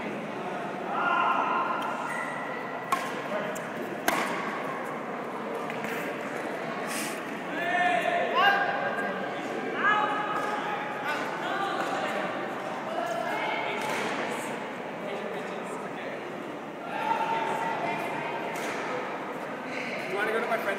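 Indistinct voices in a large, echoing gym hall, with a couple of sharp taps about three and four seconds in.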